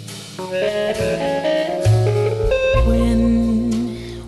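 Instrumental break in a jazz song: a melodic solo line of held and sliding notes over a walking low bass, with no singing.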